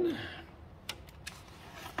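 Handling of a hot glue gun as it is picked up and brought onto a foam-board wing: a few faint clicks and taps, the last and sharpest at the very end.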